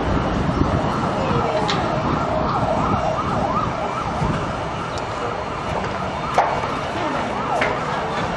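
An emergency vehicle's siren wailing in quick rising-and-falling sweeps, fading somewhat in the second half, over steady background street noise. A single sharp click about six seconds in.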